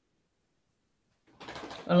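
Near silence for over a second, then a soft hiss and a woman's voice starting to speak just before the end.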